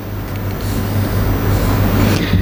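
A low rumbling noise that builds steadily in loudness, of the kind a passing road vehicle makes.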